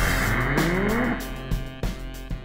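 Funk brass-band recording (trumpet, trombones, baritone sax, tuba and drums) near its close: over a held horn chord, a rising glide in the low brass about half a second in, then a few drum hits as the sound tapers off.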